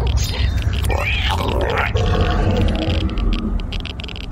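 Wordless voice sounds that glide up and down in pitch, then hold, over a steady low rumble.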